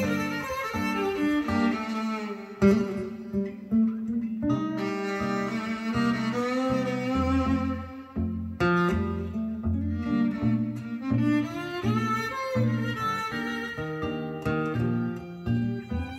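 Instrumental music with strings, bowed and plucked over a moving bass line, played through a pair of Falcon LS3/5A Gold Badge small two-way monitor speakers and picked up in the room by a phone's microphone at the listening position.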